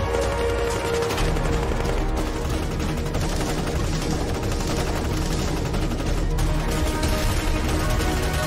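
Rapid automatic rifle fire, shot after shot with little pause, over background music.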